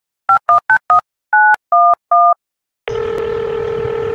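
Telephone keypad dialling: seven DTMF beeps, four quick ones and then three longer ones. After a short gap a steady ringing tone comes on the line as the call goes through.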